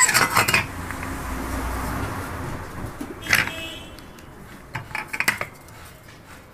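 Metal clinks and knocks from an electric clothes iron and hand tools being handled during a repair: a cluster of knocks at the start, a sharp clink a little past three seconds in, and a few lighter clinks near the end.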